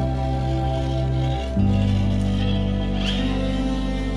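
Background music of long held chords, changing about one and a half seconds in.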